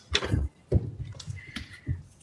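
A few dull thumps and knocks close to a lectern microphone, about four in two seconds: footsteps and hands handling the wooden lectern as one person leaves it and another steps up.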